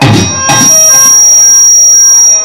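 Loud held electronic keyboard chord that comes in about half a second in and stays steady, with a shrill high tone on top. It is a dramatic stage music sting between lines.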